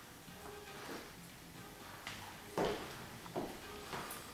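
Hairdressing scissors and comb at work on wet hair: a few separate sharp clicks and snips, the loudest about two and a half seconds in.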